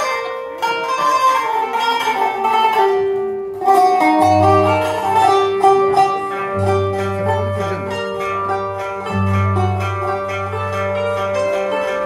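Live Arabic ensemble music led by a qanun plucking a quick melody, with violin and frame drum. Held low notes come in about four seconds in.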